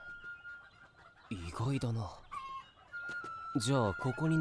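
A chicken clucking and squawking, with a short steeply rising call near the end, mixed with a man's voice and over a faint steady high tone.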